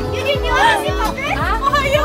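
Women laughing and squealing over music with a steady bass beat.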